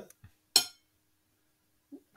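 A single short clink about half a second in, right after a laugh trails off. Then near quiet with a faint steady hum.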